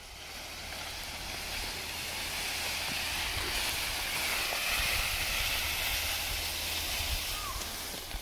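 Steady rustling hiss with a low rumble underneath, swelling over the first second or two.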